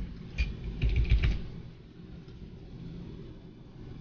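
A quick flurry of computer keyboard clicks, with dull thumps, from about a third of a second to a second and a half in.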